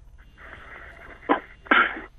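Two short breathy bursts over a telephone line, the second a little longer and louder, after a faint hiss.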